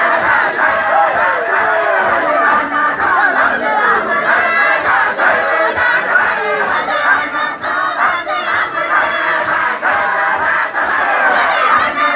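A large group of men chanting loudly together in rhythm, many overlapping voices at once: the group chanting of a Sufi dahira gathering.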